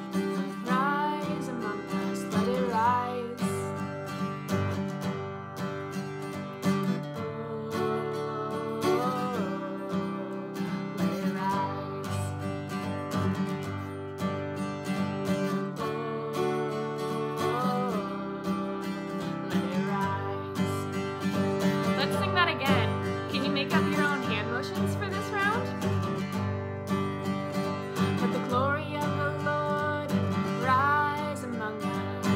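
A woman singing while strumming chords on an acoustic guitar.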